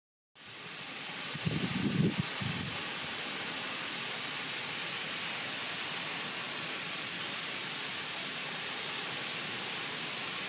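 Lawn sprinklers spraying water over grass: a steady hiss of spray that sets in just after the start and holds unchanged.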